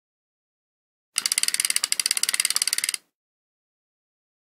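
A sound effect on an animated logo intro: a rapid, even train of sharp mechanical clicks, about eighteen a second, like a ratchet. It starts about a second in and cuts off abruptly after nearly two seconds.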